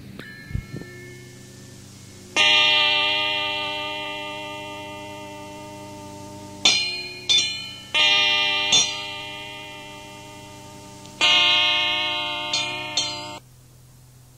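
Lo-fi experimental music: sharply struck instrument notes left to ring over a low steady hum. A few soft clicks, then one long note about two seconds in that fades slowly, a quick run of four notes, and another long note with two more on top that cuts off abruptly near the end.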